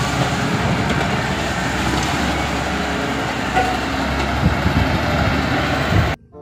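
Wheel loader's diesel engine running as it tips dirt and rubble out of its raised bucket: a steady, dense noise with a low rumble underneath.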